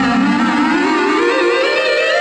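Violin playing a long upward glissando with wavering vibrato over sustained looped violin tones, with no bass or drums underneath.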